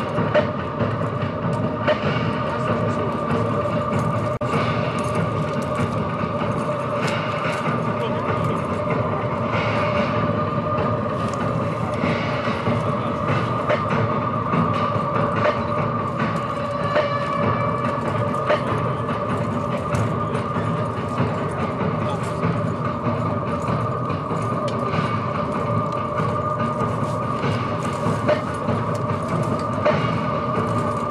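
A steady, droning musical backing with two held notes, sombre in character, under a continuous murmur. Occasional faint knocks come through it: a hammer driving nails into a wooden cross.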